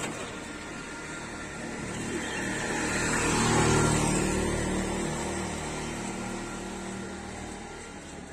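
A motor vehicle driving past: engine and road noise build up, peak a little before the middle, then fade away.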